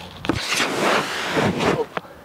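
An anti-burst Swiss ball bursting after being punctured with a screwdriver under a kneeling man's weight. A sudden pop about a quarter second in, then air rushing out through the rip for about a second and a half as the ball collapses: the ball has ripped open instead of deflating slowly.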